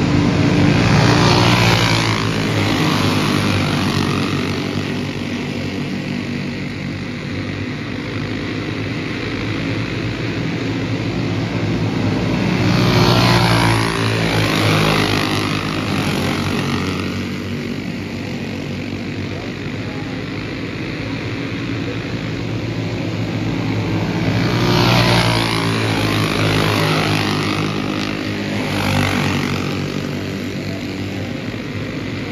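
A pack of racing go-karts' small engines buzzing as they lap a dirt oval. The sound swells loud as the pack passes about a second in, again around thirteen seconds in and near twenty-five seconds, with a smaller swell near the end, and falls back between passes.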